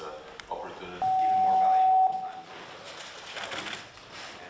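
A single steady tone lasting about a second, the loudest sound here, rising slightly and then cutting off, over background chatter of voices.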